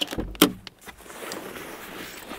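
Car door unlatched and pushed open, with a sharp clunk about half a second in, followed by a soft, steady rustle of movement.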